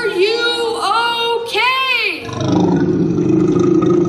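Recorded monster sound effects: a few wailing calls that rise and fall in pitch, then from about two seconds in a low, drawn-out growling roar.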